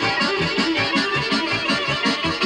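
Live dance music: a violin playing over an amplified band with a quick, regular bass line of about four notes a second.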